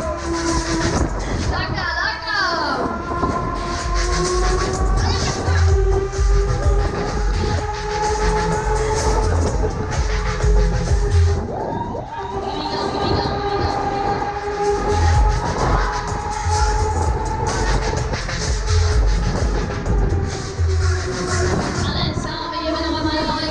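Loud music from a Huss Break Dance fairground ride's sound system, with a heavy, uneven bass beat and long held tones.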